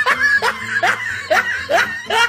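A man laughing in a rhythmic run of short 'ha' sounds, about two a second, each rising in pitch.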